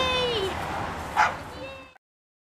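An American bulldog whining in high-pitched yips, keyed up and straining at a bite object in protection training, with a short loud bark-like burst a little past a second in. The sound cuts off suddenly just before the end.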